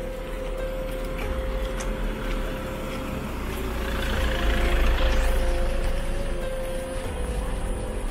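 A car passes close by, its noise building to a peak about halfway through and then fading, over soft background music with long held notes.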